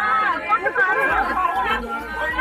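Several people talking at once, their voices overlapping into a steady chatter close by.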